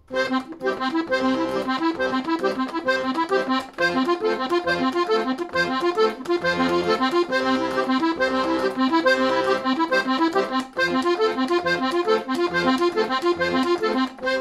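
Hohner Verdi II piano accordion playing an arpeggiated accompaniment figure in triplets, a quick, even repeating pattern of notes over the bass.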